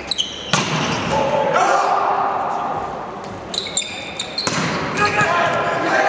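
Volleyball rally in an echoing sports hall: the ball is struck with sharp smacks about half a second in and again near four and a half seconds, with brief high squeaks from sneakers on the court floor and players' shouts and crowd voices in between.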